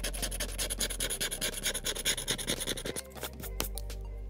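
A handheld scratcher tool scraping the coating off a paper lottery scratch-off ticket in quick, rapid strokes, stopping about three seconds in. Music plays underneath.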